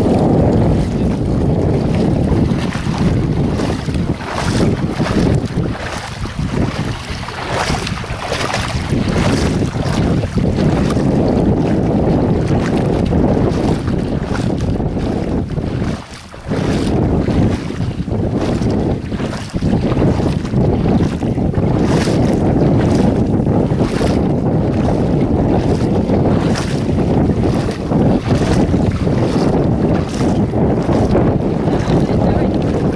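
Heavy wind buffeting the microphone, with water splashing from people wading through shallow sea water beside an outrigger boat.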